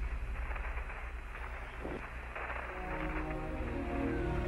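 Radio static hiss over a low rumble, with no reply to the call. About three seconds in, film score music fades in with long held notes.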